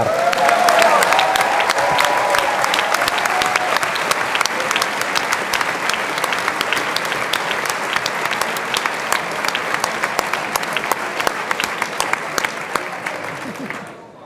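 Audience applauding, a long spell of clapping that tapers off near the end, with a few voices calling out in the first few seconds.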